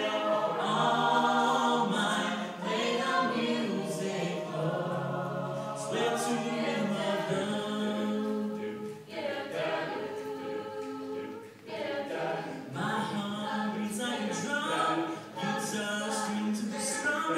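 A mixed high school chorus of young men and women singing a cappella in several parts, with short breaks between phrases about nine and eleven and a half seconds in.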